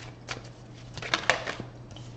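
Tarot cards being handled and laid down on a wooden table: a few short taps and slaps, several close together about a second in.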